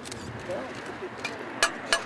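Metal trowel clinking against a stone block: three sharp clicks in the second half, over quiet murmured voices.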